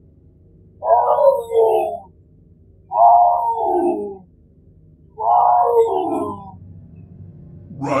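Tiger calling three times, each call lasting a little over a second and dropping in pitch at its end, over a low steady drone.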